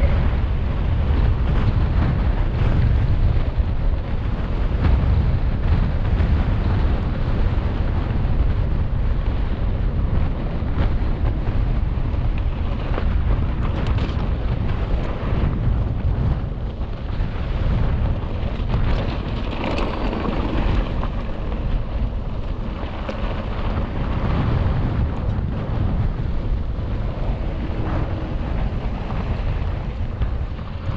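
Wind buffeting a GoPro's microphone as a mountain bike rolls along a dirt trail, with a few brief knocks and rattles from the bike over rough ground.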